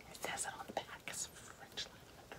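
A woman whispering softly under her breath, in short breathy bursts.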